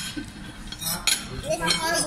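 Metal forks and knives clinking against ceramic dinner plates, in a few sharp ringing clinks about a second in and again near the end.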